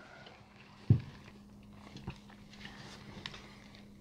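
Quiet room with a faint steady hum, a short soft thump about a second in, and a few faint small mouth and handling noises as rum is tasted from a glass.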